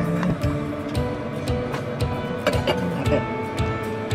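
Background music with a steady beat and sustained held notes.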